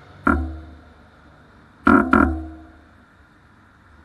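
Bicycle bell struck three times: one ring, then two in quick succession about a second and a half later, each ring fading over about half a second.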